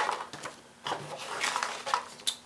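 Hands rummaging through a box of fishing tackle and packaging: a scattered run of small clicks and rustles.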